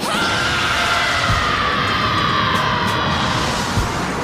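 Dramatic background music mixed with the rush of an anime energy-beam blast, over which a long scream slowly falls in pitch after a sudden loud onset at the start.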